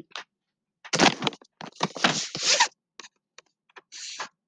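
Scraping and rustling as the whiteboard set-up is shifted, in two stretches, followed by a few light clicks.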